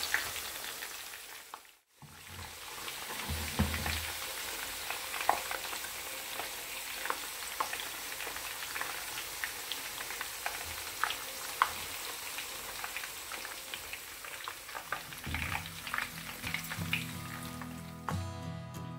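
Artichoke pieces shallow-frying in hot oil: a steady sizzle with scattered crackles and pops, briefly cutting out about two seconds in.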